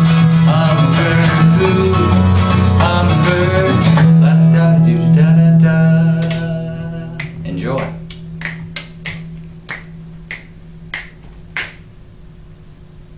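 Eighteen-string acoustic guitar strummed fast with a man singing, ending on a chord that rings out and fades over a few seconds. Then a steady run of about eight finger snaps, a little more than one a second.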